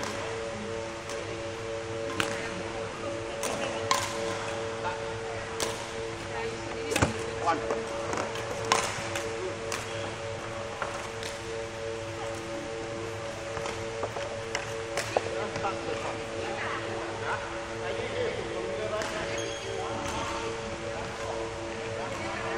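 Badminton rackets hitting shuttlecocks: sharp, irregular pops about once a second, in a large indoor sports hall over a steady low hum.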